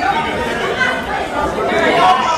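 Several people's voices talking over one another in a heated street argument.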